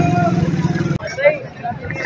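A nearby motor vehicle engine running with a steady, rapidly pulsing hum, which stops abruptly about halfway through; afterwards faint voices of a market crowd are heard.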